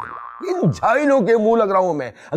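A short comic sound-effect tone, a steady ringing chord of fine tones, for about half a second. It is followed by a drawn-out, wavering vocal sound with no clear words.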